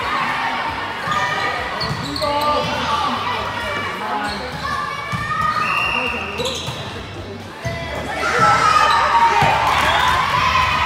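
Indoor volleyball rally in a large, echoing gym: overlapping voices of players and spectators with the knocks of ball contacts. The voices swell suddenly about eight seconds in and stay loud to the end.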